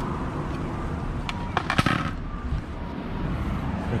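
A parked bicycle being handled: a few sharp clicks, then a quick cluster of louder metallic clicks and rattles about halfway through, over a steady low street rumble.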